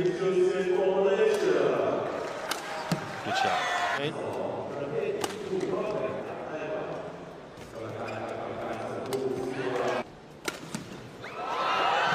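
Badminton rackets striking a shuttlecock in rallies: sharp, separate hits a second or two apart, with voices from the crowd in the hall. A loud burst of voices comes near the end, as a point is won.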